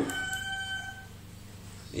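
A single steady, pitched tone with overtones, held for about a second and then fading.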